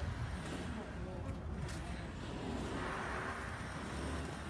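Outdoor background noise: a steady low rumble with faint voices in it.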